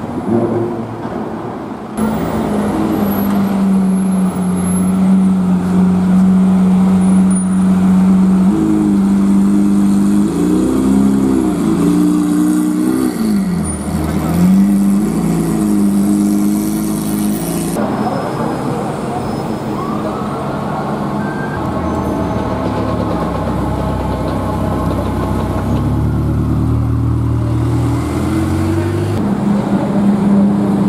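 Lamborghini Aventador SV's V12 engines running at low revs in traffic, with the pitch rising and falling in short throttle blips. The sound jumps at cuts between clips of two different cars.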